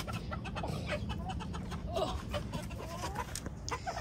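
Chickens clucking with short, scattered calls, over small clicks and rustles.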